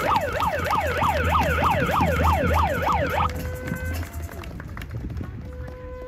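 An electronic siren sounding outdoors: a steady tone that breaks into rapid up-and-down yelping sweeps, about four a second, for some three seconds, then falls back to a steady tone and fades.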